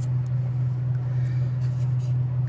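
A steady, even low drone of an engine running.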